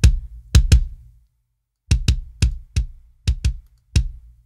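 Sampled MIDI kick drum playing a quick pattern of hits on its own, heavily compressed through a Distressor compressor plugin set to slow attack and fast release to add punch. It stops for under a second a little after one second in, then carries on.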